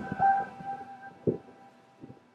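Background music with sustained notes dying away, a single dull thump a little past the middle, then a quiet lull.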